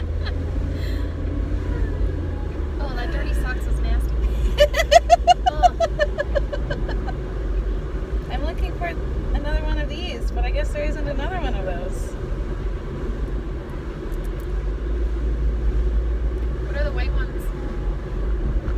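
Steady low rumble of a car's road and engine noise, heard from inside the cabin while driving. A woman laughs in bursts about five seconds in, and there is some talk later on.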